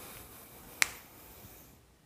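Faint room hiss with one sharp click a little under a second in.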